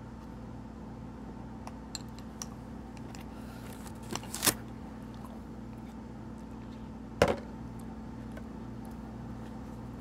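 Steady low electrical hum with a faint pulsing undertone, with a few light ticks and two sharp knocks, about four and a half and seven seconds in, from handling a spoon, bowl and plastic ice-cream cup.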